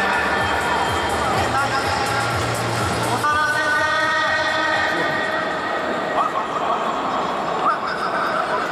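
Stadium crowd murmur under music and a voice over the public-address system. About three seconds in, a steady held note sounds for roughly two seconds.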